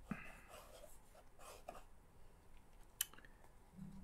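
Faint rustling and sliding of cardboard game cards being handled on a tabletop, with one sharp tap about three seconds in.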